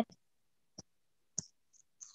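Three short, faint clicks in otherwise dead silence: one a little under a second in, a slightly louder one about a second and a half in, and a fainter one just after.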